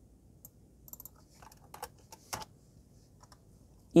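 Faint, irregular clicks and taps of a computer keyboard and mouse as a frequency value is entered in a software equalizer: a handful of separate clicks spread over a few seconds.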